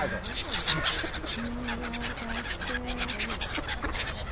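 A mixed flock of black-headed gulls and mallard ducks calling as they crowd in to be fed, with many short overlapping calls throughout.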